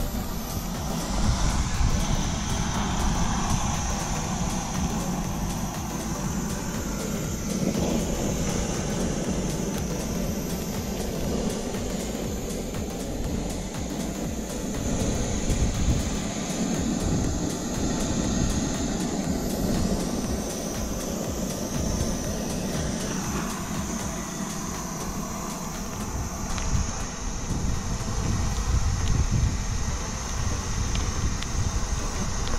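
Propane weed-burner torch burning with a steady roar, its flame held into a brush pile to light it.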